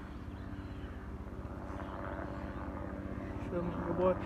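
A steady low rumble with a faint, even hum.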